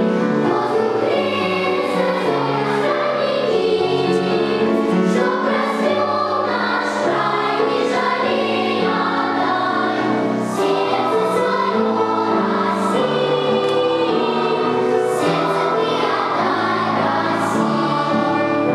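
Children's choir singing, with several sustained notes sounding together.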